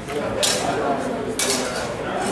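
Steel training longswords clashing: two sharp metallic strikes about a second apart, each with a short ringing tail.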